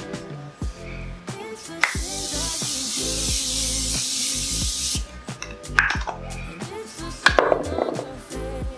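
Makeup setting spray misted onto the face in one long hiss lasting about three seconds, over background music with a bass line.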